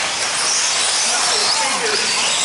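Several electric 1/10-scale 4wd RC buggies racing: a steady hiss of tyres and drivetrains on dirt with motor whines rising and falling as the cars accelerate and brake.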